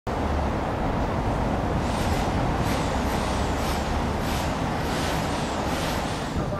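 Steady outdoor street noise with a low rumble. About two seconds in, a hissing sound joins it and repeats roughly twice a second.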